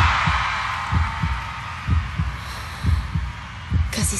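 Heartbeat sound effect: paired low thumps, lub-dub, about once a second, over a loud hiss that sets in suddenly and slowly fades.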